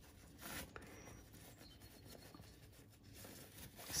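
Faint rustling of cotton fabric as hands scrunch it along a safety pin that is threading elastic through a sewn casing, a little louder about half a second in.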